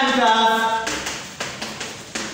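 A man's drawn-out voice for under a second, then a few light taps and scrapes of chalk writing on a blackboard.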